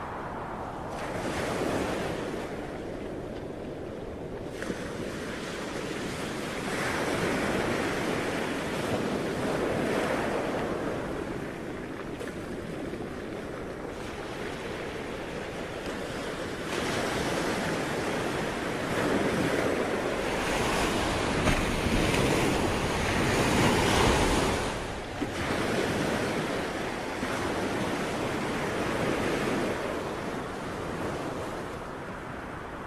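Sea waves breaking and washing back, a rushing noise that swells and eases over several seconds at a time, loudest in the second half.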